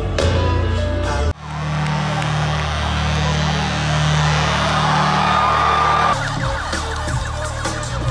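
Live concert music recorded from within a festival crowd, with crowd noise over it. It cuts abruptly to a different song about a second in and changes again about six seconds in.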